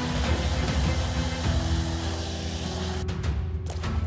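Handheld hair dryer blowing a steady rush of air onto a shirt, cutting off about three seconds in, with background music underneath.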